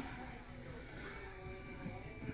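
Quiet room tone: a faint, steady background hum with no distinct events.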